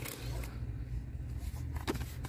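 Steady low hum of a store's background (room tone), with a brief handling sound near the end as a paper journal is pulled from a plastic basket.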